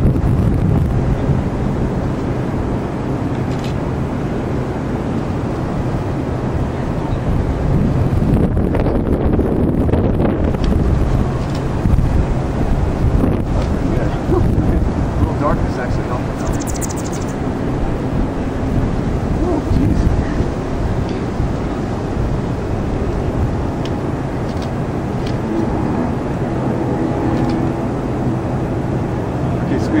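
Steady outdoor background rumble dominated by wind on the microphone, with faint voices, and a brief hiss about halfway through.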